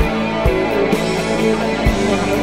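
Instrumental section of a slow psychedelic rock song: guitar over bass and a programmed drum kit, with the kick drum landing about every half second.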